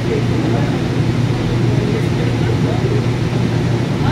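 Steady low hum inside a light-rail car as the train starts to pull away from a station platform.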